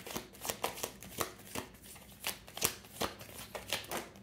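A deck of tarot cards being shuffled by hand: a run of quick, irregular card clicks.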